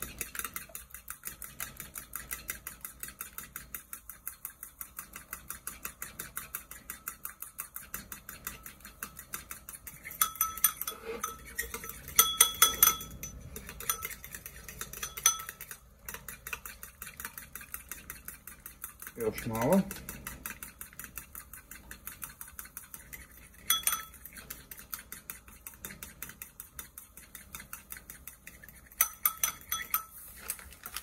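A spoon beating an egg, oil and semolina mixture in a bowl for semolina dumplings, ticking against the bowl in quick, even strokes, with a few louder clinks partway through and near the end.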